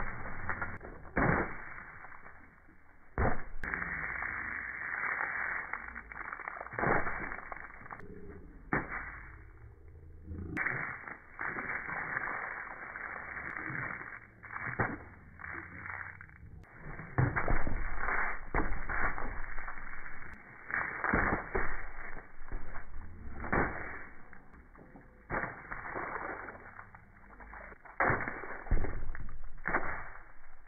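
Paint being thrown and splatting against a person and the wall behind: irregular sharp hits, some in quick succession, with louder clusters near the middle and near the end.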